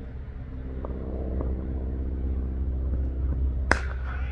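A cricket bat striking the ball once: a single sharp crack near the end, the stroke that goes for four. It sounds over a steady low rumble and hum.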